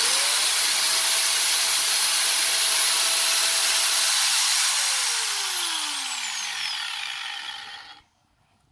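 Electric angle grinder switched on, running at a steady whine at full speed for about four and a half seconds, then cut off and winding down with a falling pitch until it stops near the end.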